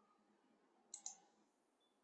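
Near silence: room tone, broken by two short, faint clicks close together about a second in.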